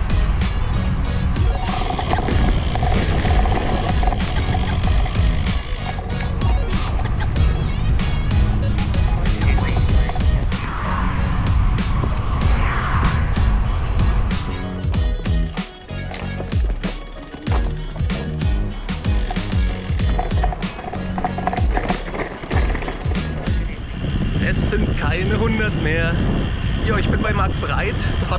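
Wind buffeting the microphone of a handlebar-mounted camera on a road bike, with the tyres rolling on asphalt at riding speed.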